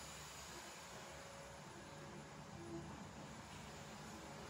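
Faint, steady whooshing of a vacuum cleaner running in another room, with a faint steady tone.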